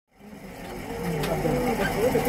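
Voices talking, fading in from silence over about the first second.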